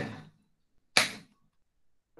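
A single short, sharp knock about a second in: a book being put down.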